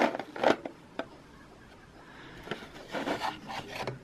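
Handling noise as a Speedplay pedal is pulled out of its foam packing tray: short rubs and light knocks in the first second, a quieter stretch, then more rubbing and scraping near the end.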